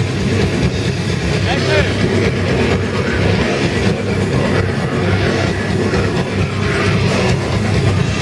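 Death metal band playing live: heavily distorted guitars over fast, relentless drumming, with growled vocals, all loud and dense as heard from within the crowd.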